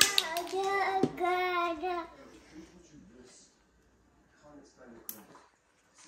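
A toddler's high-pitched wordless babbling, two drawn-out sing-song sounds in the first two seconds, then mostly quiet with a faint click about five seconds in.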